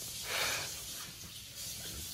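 A person exhaling: a breathy hiss that swells about a quarter second in and fades within a second, then a fainter hiss.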